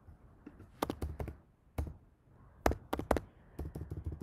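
Typing on a computer keyboard: separate key clicks, then a quicker run of keystrokes near the end.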